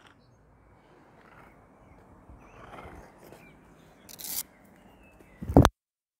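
Faint outdoor background with a short scrape about four seconds in, then a loud bump of the handheld phone being moved as it swings down toward the ground, after which the sound cuts out.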